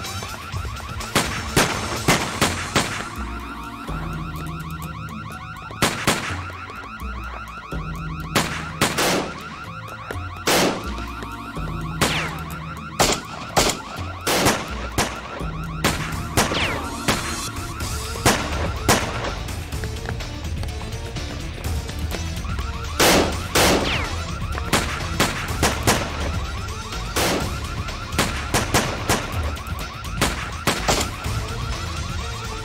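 Gunfire in a shootout: repeated shots, some single and some in quick clusters, throughout. Under the shots runs a continuous pulsing high alarm tone, with music.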